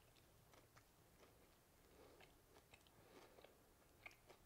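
Near silence with faint chewing: scattered soft mouth clicks from a person chewing a bite of a fried chicken sandwich with the mouth closed.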